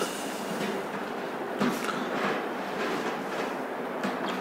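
Steady room noise with no speech, a few faint brief sounds in it.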